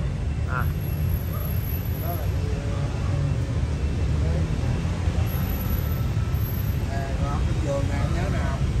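Steady low rumble of road traffic, with faint voices talking now and then over it.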